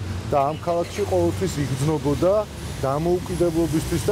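A man talking continuously, with a steady low rumble of street traffic behind him.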